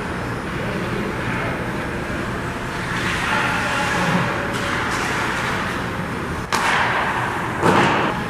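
Ice hockey play in a rink: a steady din of skating and arena noise, with one sharp impact about six and a half seconds in and a louder one just before the end.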